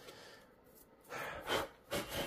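A person breathing out audibly, a couple of short noisy exhales starting about a second in, after a quiet start.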